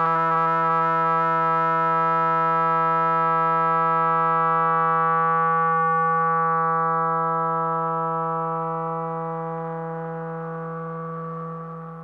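Music: a single sustained keyboard note held steady, then slowly fading out as its upper overtones die away, closing a track.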